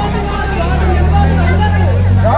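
A loud, steady low hum under faint voices and chatter.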